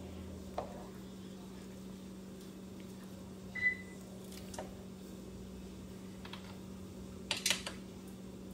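Light, scattered clicks of a spatula and lid against a large cooking pot while rice is stirred into broth, over a steady low hum. One short high beep sounds about three and a half seconds in, and a small cluster of clicks comes near the end.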